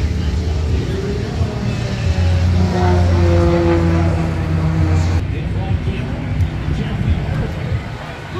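A steady low engine drone that swells in the middle, with a tone falling in pitch as it peaks, over crowd voices.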